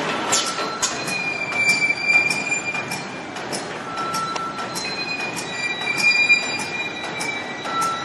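Plastic bag sealing and cutting machine with a robot arm running in production: a rhythmic mechanical clacking about twice a second, with thin high whistling tones coming and going.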